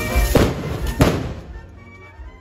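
Two sharp firecracker bangs about three-quarters of a second apart, from the fireworks of a burning torito, over festival band music that grows much quieter after the second bang.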